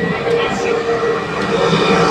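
Formula 1 car engine running at a steady low speed as the car comes down the pit lane, a droning tone that grows a little louder near the end.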